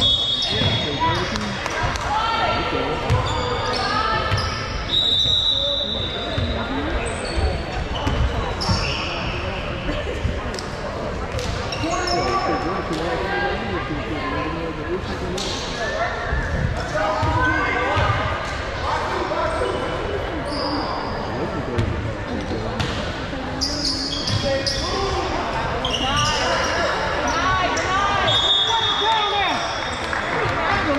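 Basketball game in a gym: the ball bouncing on the court amid indistinct voices from the crowd and players, with short high sneaker squeaks now and then.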